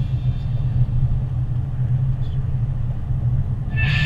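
A car driving on a paved road: a low, steady rumble with no higher sounds over it.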